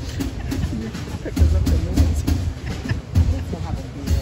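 A small jazz group plays the intro: guitar, bass and drums, with deep bass notes standing out. A person's voice talks over the music.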